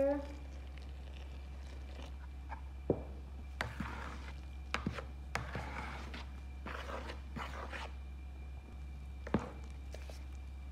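Flour and water being mixed by hand into bread dough in a bowl: soft rustling and squishing of the dough, broken by a few sharp knocks of a metal spoon against the bowl, over a steady low hum.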